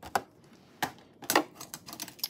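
Stiff paper instruction card being handled and set aside: a quick run of sharp clicks and crackles, loudest about a second and a half in.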